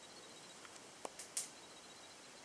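Quiet room tone with a few short, faint clicks a little after a second in.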